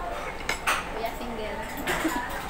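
A metal spoon clinking against dishes at a meal: two sharp clinks close together about half a second in, and another near the end.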